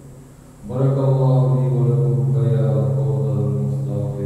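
A man chanting Arabic recitation of the marriage sermon (khutbah nikah) through a microphone, holding one long steady note that begins about a second in.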